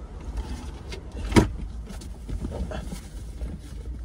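A low steady rumble inside a car, with faint rustling as a person shifts across the seats and one sharp click or knock about a second and a half in.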